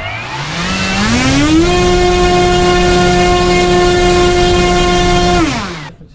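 Turnigy SK4250 650KV brushless outrunner motor spinning an 11x7 propeller, run up to full throttle on a 5S battery. The whine climbs in pitch over the first second and a half, holds steady at about 11,000 RPM while drawing 37 amps, then drops away as the throttle is closed near the end.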